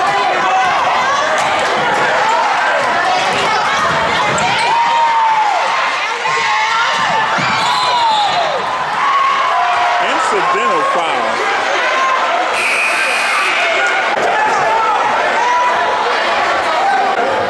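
Basketball game in a gym: many spectators talking and shouting at once, with the basketball bouncing on the hardwood court. A short shrill referee's whistle blows about twelve and a half seconds in.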